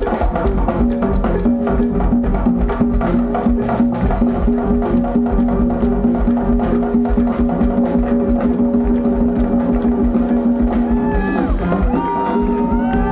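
Live band playing a fast, rhythmic groove, led by sharp percussive clicks over bass guitar, with a long held note through most of it. The percussionist is clapping along.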